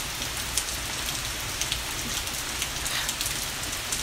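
Steady background hiss with scattered faint ticks and a low rumble underneath, in a pause between spoken words.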